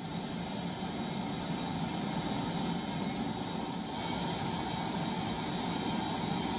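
Jet airliner on the ground with its turbines running: a steady rumble with a thin high whine.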